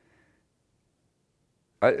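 Near silence in a pause in a man's speech; he starts speaking again near the end.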